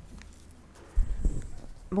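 Quiet room tone, then a sudden low thump about a second in followed by a few softer knocks: a desk gooseneck microphone being handled as the next speaker takes it.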